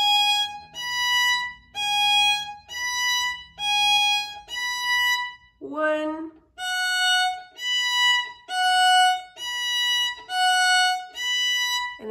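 Bowed violin on the E string playing a pinky-strengthening drill: slow even notes rocking between the second and fourth fingers. After a short break about halfway through, the notes rock between the first and fourth fingers, each note lasting under a second.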